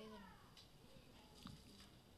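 Near silence: faint room tone, with one short, faint call falling in pitch right at the start and a small click about one and a half seconds in.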